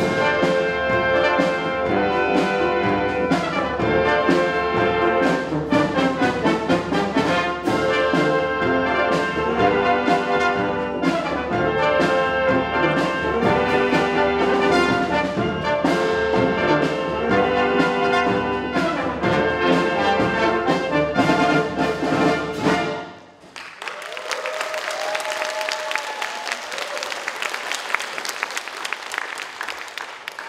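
Military brass band with saxophones and sousaphone playing an up-tempo pop arrangement, ending abruptly about 23 seconds in. Audience applause follows, fading near the end.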